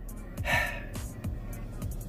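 A man draws a quick, audible breath through the mouth about half a second in, over a faint low steady hum.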